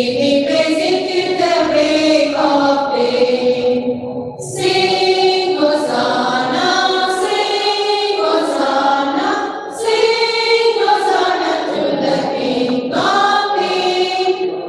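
A choir of women teachers singing a song together, in long held phrases with brief pauses for breath between them.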